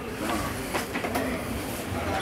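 Steady room noise with a low hum and hiss, and faint, indistinct voices in the background.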